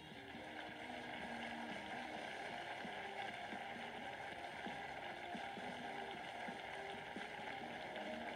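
Studio audience applauding, a steady rush of clapping heard through a phone's small speaker.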